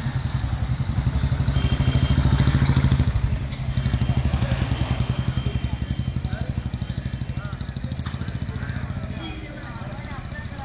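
A nearby road vehicle's engine running with a fast, even throb, loudest in the first three seconds, amid passing street traffic.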